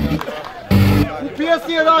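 Voices over background music, with a short loud burst of noise just under a second in.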